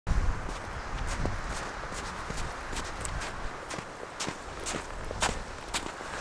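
Footsteps crunching in snow at a walking pace, about two steps a second.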